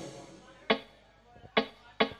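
Two sharp percussive taps about a second apart, the opening of a band's count-in before a song.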